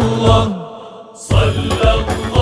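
Devotional Arabic chant of the names of God over music with a percussion beat. The voice ends a phrase on a falling note about half a second in, the music drops away briefly, and the beat comes back in a little past a second.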